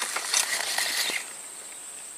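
Baitcasting fishing reel cranked in a short burst of whirring and clicking as a fish is hooked, stopping about a second in. A steady high insect drone runs behind it.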